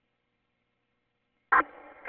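Dead silence, then about one and a half seconds in a police two-way radio transmission cuts in with a short, sharp burst, followed by a quieter open channel.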